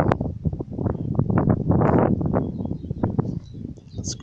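Wind buffeting a handheld camera's microphone outdoors: a loud, low rumble that surges and eases in irregular gusts.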